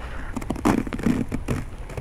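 Fingers scraping through a crust of ice on snow covering a car, making a quick run of gritty crackles and scrapes. The crust is snow glazed over by freezing rain and sleet.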